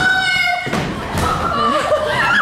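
A person dropping off a folding chair onto a wooden floor: a thud of a body hitting the boards, amid voices.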